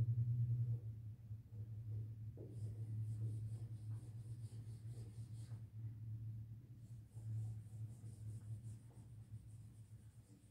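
Dry-erase marker hatching on a whiteboard: runs of quick back-and-forth scratchy strokes, faint over a steady low room hum.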